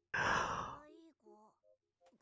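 A man's breathy sigh, loudest at the start and trailing off over about a second, followed by faint low speech.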